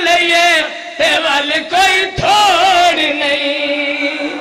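A man chanting a verse in a melodic, ornamented voice through a microphone and PA, his pitch wavering up and down in long phrases with short breaks for breath about a second in and again near two seconds.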